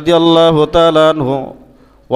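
A man's voice intoning a phrase in the sing-song chant of a Bengali waz sermon, with long held notes, trailing off about a second and a half in.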